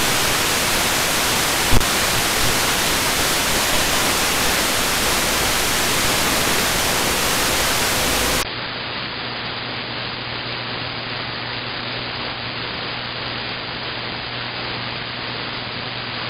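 Receiver static from an RTL-SDR dongle tuned to an empty frequency: a steady full-band hiss with a brief click about two seconds in. About eight seconds in, the hiss drops a little and turns duller, losing its top end, as the receiver is retuned to the airband in a narrower AM setting; a faint low hum sits under it.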